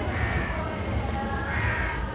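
Crows cawing, a few harsh calls about a second and a half apart, over a steady low rumble of outdoor ambient noise.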